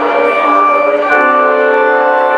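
Organ music playing sustained chords, with the chord changing twice, about half a second in and again about a second in; the tone is bright and bell-like.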